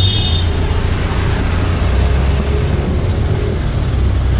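Steady road traffic noise with a deep, even rumble from cars and a motorised tricycle close by. A brief high-pitched tone sounds at the very start.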